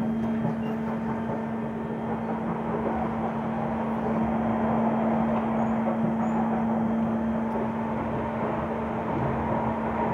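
Kawasaki C151 electric metro train heard from inside the carriage while running along the elevated track: a steady rumble of wheels on rail with a constant hum under it.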